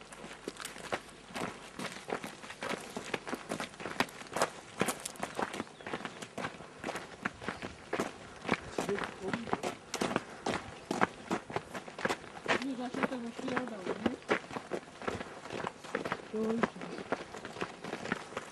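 Footsteps of people walking down a forest trail: a quick, irregular run of steps, several a second, that does not let up.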